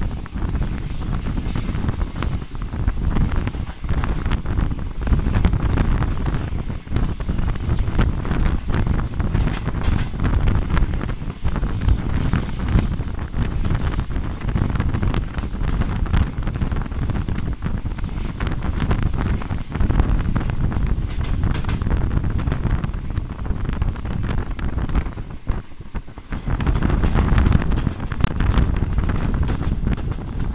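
Wind buffeting the microphone over the steady rumble of a passenger train's coaches running along the track, heard from outside the coach door. It eases briefly about four seconds before the end.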